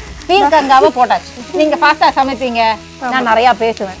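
Chopped vegetables and onion sizzling as they fry in a pan and are stirred with a wooden spatula, under a woman's voice talking in short phrases that stands out above the frying.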